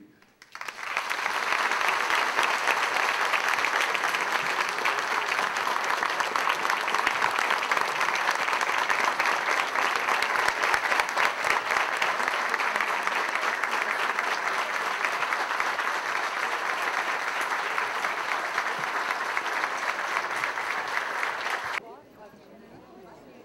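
Large audience applauding, a dense steady clatter of many hands clapping that swells up within the first second, holds for about twenty seconds and then cuts off abruptly near the end.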